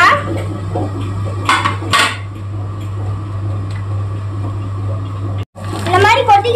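Two short clatters of a cooking utensil against a frying pan, about one and a half and two seconds in, over a steady low hum.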